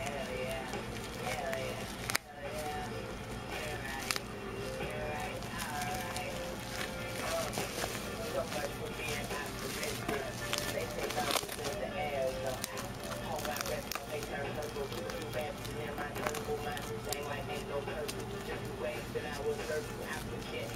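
Bubble wrap and plastic packaging crinkling and crackling as it is handled, in many short sharp bursts, over a steady background of indistinct voices and music.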